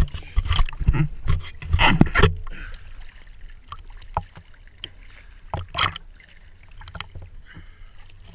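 Sea water splashing and sloshing close to the microphone as divers bob at the surface in small waves. Loud irregular splashes come in the first two and a half seconds, then scattered smaller ones, with one more strong splash near six seconds.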